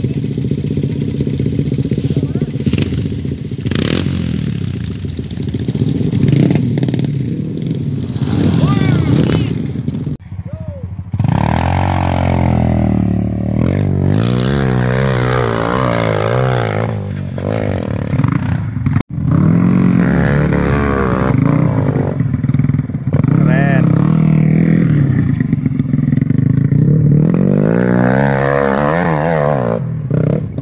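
Trail motorcycle engine revving hard in repeated bursts, its pitch rising and falling as a rider works up a steep dirt hill climb. The sound breaks off suddenly about ten seconds in and again just past the middle.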